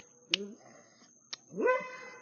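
A dog whining briefly near the end, after a couple of sharp clicks.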